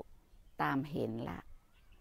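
Woman speaking Thai in a calm, measured voice: one short phrase, between pauses.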